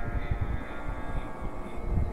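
A faint steady drone with many overtones, held at one pitch over a low, irregular rumbling noise.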